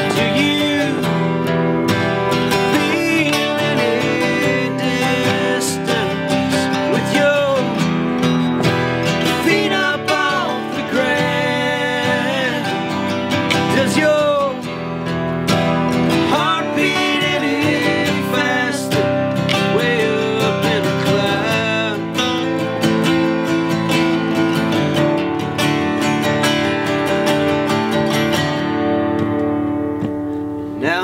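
A 1964 Epiphone Frontier flat-top and a 1951 Stromberg archtop acoustic guitar strummed together, with two voices singing in harmony over them.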